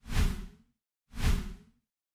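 Two edited-in whoosh sound effects, each about half a second long, the second about a second after the first.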